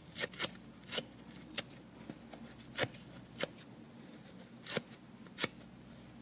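Dry soft yellow kitchen-sponge foam torn apart by hand: about eight short, sharp rips, unevenly spaced.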